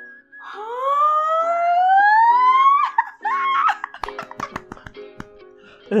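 A long rising squeal of excitement that climbs steadily in pitch for about two seconds, followed by shorter excited cries and laughter, over soft plucked background music.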